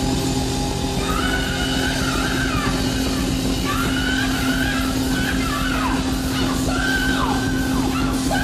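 Live rock band at full volume holding a sustained note. About a second in, a high lead line enters and wails over it, bending and sliding up and down in pitch.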